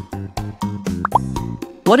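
Children's background music with a steady beat, and a short cartoon 'plop' sound effect about a second in: two quick rising blips, one after the other.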